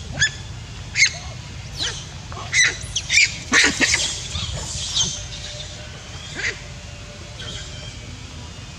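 Macaques giving short, sharp, high-pitched calls, about a dozen in quick succession during the first five seconds and then only one or two more, over a steady low rumble.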